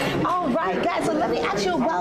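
Speech only: people chatting, their voices overlapping.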